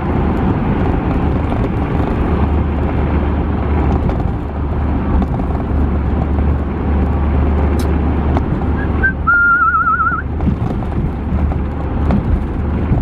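Steady road and engine noise inside a van's cab cruising at about forty miles an hour: a continuous low drone with tyre noise. About nine seconds in, a short warbling whistle sounds for about a second.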